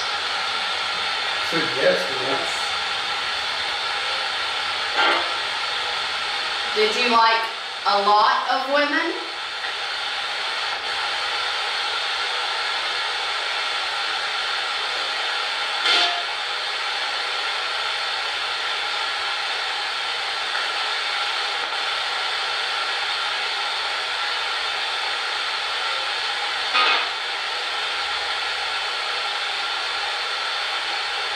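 A handheld spirit box sweeping through radio stations: a steady static hiss broken a few times by short snippets of broadcast voice or sound, the longest about seven to nine seconds in. A snippet right at the start is taken for the word "yes", as if it were an answer.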